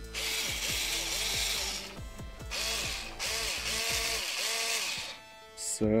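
Performance Power PSD36C-LI 3.6 V cordless screwdriver running unloaded, its small motor and gearbox spinning in two runs: a brief let-off about two seconds in, then it stops about five seconds in.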